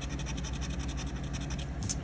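A scratching tool rubbing the coating off a Monopoly scratch-off lottery ticket: a quick run of short, faint scratchy strokes, a little louder near the end.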